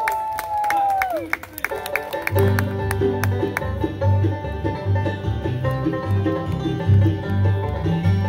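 Scattered hand clapping, then about two seconds in a bluegrass band starts a tune, with banjo, fiddle, guitar, mandolin and upright bass playing together.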